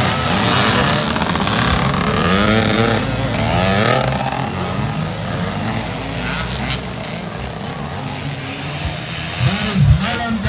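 Several dirt bike engines revving as the bikes race around a motocross track, their pitch rising and falling with the throttle. There is a louder burst near the end.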